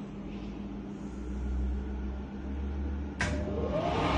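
Lainox combi steamer oven switching on about three seconds in: a sudden click, then its convection fan motor spinning up with a rising whine, over a low steady hum.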